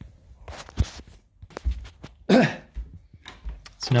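A man clears his throat once, a little past halfway, amid soft low thumps and a sharp knock just under a second in from walking and handling the camera in a small room.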